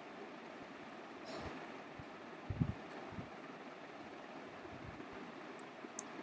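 Faint steady room hiss from a computer microphone, with a few soft low thumps, the loudest about two and a half seconds in.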